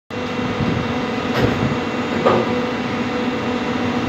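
Plastic injection moulding machine running with a steady hum. Two brief knocks come about a second and a half in and again just under a second later.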